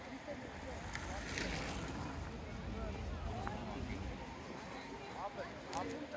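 Outdoor ambience of distant voices and short scattered calls over a steady low rumble, with a brief rustle about a second and a half in and a click near the end.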